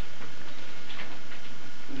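A few faint, irregular ticks and squeaks of a marker being written on a white board, over a steady hiss.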